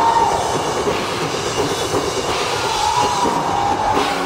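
Hard rock band playing live at high volume, heard as a dense, noisy wash through an audience camera's microphone.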